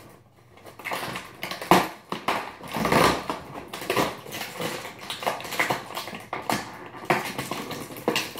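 Cardboard advent calendar box and its packaging being handled as a compartment is opened: irregular clicks, crinkles and scrapes, with a sharp click a little under two seconds in and the loudest scraping around three seconds in.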